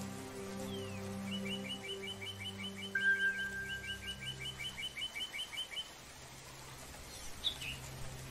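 Soft spa music of held low tones with birds singing over it: a run of quick repeated chirps at about five a second, a long steady whistle about three seconds in, and another short call near the end.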